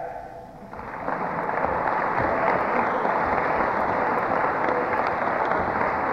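Audience applauding a graduate as he is called up for his diploma; the clapping starts under a second in, swells over the next second and holds steady.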